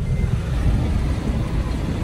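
Interior rumble of a Sprinter van driving slowly over a rough, muddy dirt road: a steady low drone of engine and tyres with uneven jolts from the ruts.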